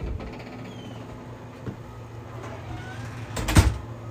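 A low, steady hum of room noise. About three and a half seconds in comes a short burst of sharp, loud clacks from an apartment door.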